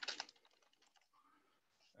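Computer keyboard typing: a quick run of keystrokes right at the start, then near silence.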